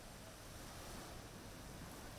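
Faint, steady hiss of sea and wind ambience, with no distinct events.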